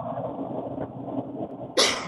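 Steady background noise through a student's open microphone on a video call, with no clear tone in it. Near the end comes one short cough.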